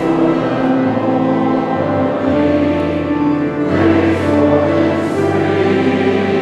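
Church congregation singing together, with instrumental accompaniment under the voices.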